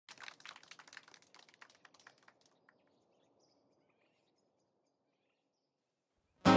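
Faint bird chirping, a quick run of short chirps that fades out about two and a half seconds in, leaving near silence with a few very faint high chirps.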